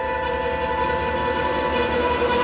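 Thriller film-score music holding a sustained chord of many steady tones.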